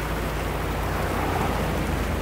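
A drain jetter running: a steady rush of water from a high-pressure jetting hose in a culvert pipe, over the even low hum of the jetting machine.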